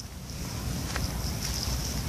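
Wind rumbling on a phone's microphone, with handling noise as the phone is swung about, under a faint steady high-pitched hiss.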